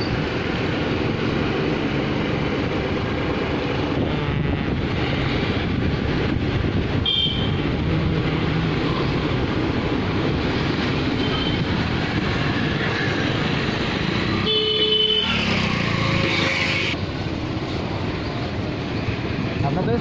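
Street traffic noise with vehicle horns honking: a short toot about seven seconds in and a louder horn blast around fifteen seconds.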